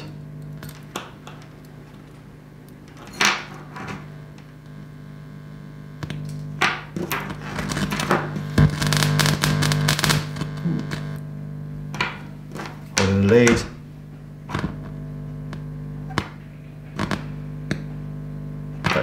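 Steady mains hum from an amplifier played through a speaker with the volume turned up, picked up through a film capacitor on the amp's input; how loud the hum is shows which end of the capacitor is the outer foil. Over it come clicks and rustling as crocodile-clip test leads are unclipped and refitted to the capacitor, and a short louder buzz about 13 seconds in.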